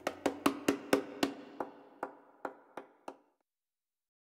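A run of about eleven sharp clicks or knocks, close together at first, then slowing and growing fainter until they stop about three seconds in.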